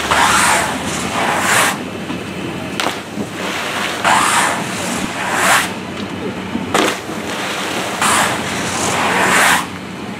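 Water-jump runs: skis and snowboards rushing down a wet ramp and splashing into the pool. The rushing swells up about every four seconds, with a few sharp knocks in between and a steady low hum underneath.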